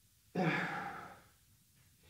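A man's sigh: one breathy exhale, under a second long, starting suddenly and fading away.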